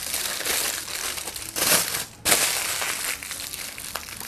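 Aluminium foil crinkling and crumpling as it is wrapped around the bagged stem ends of a hand-tied bouquet, with a louder crunch just under two seconds in and a brief pause after it.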